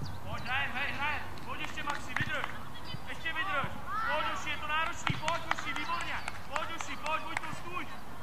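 Children's high-pitched shouts and calls across a football pitch, short cries in quick succession, with a few sharp thuds of the ball being kicked, the loudest about five seconds in.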